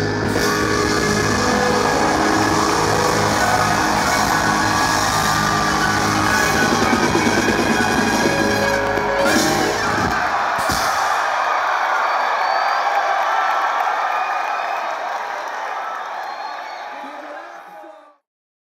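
Live band with electric bass and drum kit playing to a close about ten seconds in, followed by crowd cheering and whooping that fades out.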